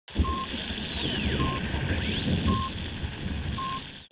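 Electronic title-sequence sound design: four short, even beeps about a second apart over a low rumbling drone and hiss, with one tone sweeping down in the first half and another sweeping up shortly after.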